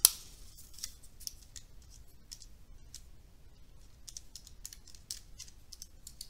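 Calculator keys being pressed: faint, short clicks at an irregular pace, about a dozen over several seconds, as numbers are entered.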